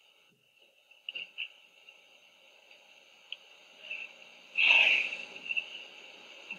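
Steady hiss of an old film soundtrack, with a few faint clicks and a brief louder noise about four and a half seconds in.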